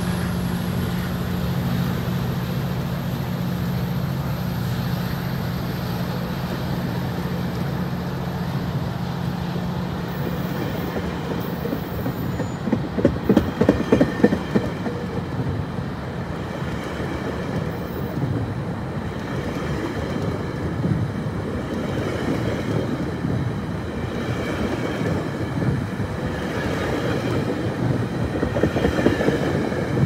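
GO Transit bilevel commuter coaches passing close by. A steady low hum stops about ten seconds in, then the wheels clatter over the rail joints, with bunches of clicks about halfway through and again near the end.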